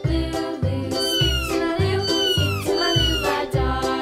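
A young kitten mewing several times, each mew high-pitched and falling, over background children's music with a steady beat.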